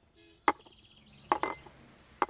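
A series of sharp knocks or chops: one about half a second in, then a close pair near the middle, with faint bird chirps between them.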